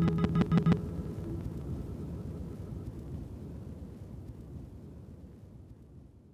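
The tail end of an acoustic folk song: a few quick stuttering clicks in the first second as the music breaks off, then a low rumbling noise that fades out steadily.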